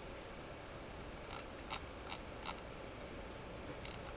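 About five faint, sharp clicks from a computer mouse, irregularly spaced, over a steady low hiss.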